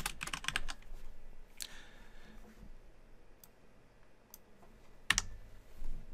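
Typing on a computer keyboard: a quick run of keystrokes at the start, a few single clicks spread through the middle, then a short cluster of clicks near the end.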